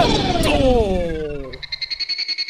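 Cartoon sound effects on an animation soundtrack: a pitched tone sliding steadily down for about a second and a half, with a short click partway through, then a fast, high pulsing trill starting near the end.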